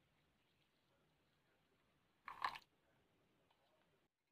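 Near silence: room tone, broken once about two and a half seconds in by a brief short noise.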